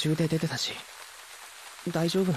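Steady rain falling, an even hiss, with short lines of dialogue over it at the start and again near the end.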